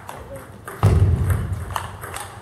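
Table tennis balls ticking against bats and tables, a few sharp separate clicks, over a low rumble that comes in about a second in.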